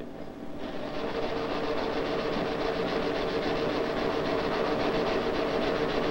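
IBM 1443 type-bar line printer of the 1440 data processing system printing: a fast, even mechanical clatter that starts about half a second in and runs steadily over a faint hum. It is printing with a numbers-only type bar, which lets it print three times faster than with the full alphabetic bar.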